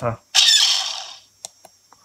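TIE fighter laser cannon sound effect played through a small speaker from the blaster electronics board: one shot starting about a third of a second in and fading out over most of a second, followed by a few faint clicks.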